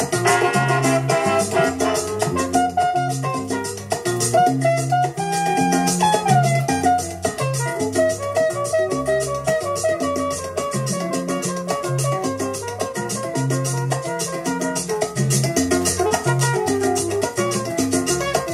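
Salsa orchestra recording played from a vinyl record on a Technics SL-1200MK5 turntable. A repeating bass pattern and busy percussion run under a melodic line.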